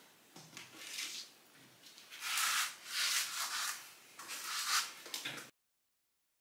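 Paper CD booklet and clear plastic CD case being handled: four bursts of rustling and plastic rubbing, loudest in the middle. The sound cuts off suddenly shortly before the end.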